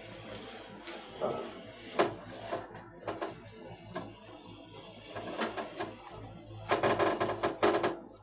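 Kangaroo leather lace being pulled by hand through a vise-mounted lace cutter that trims it to width, making scattered scraping clicks. Near the end comes a fast run of rasping clicks lasting about a second, the loudest part.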